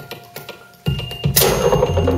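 A homemade wooden box instrument played live as experimental percussion. It is quiet for most of the first second, then knocking and clatter start suddenly, with a loud crash about a second and a half in and a low steady hum coming in near the end.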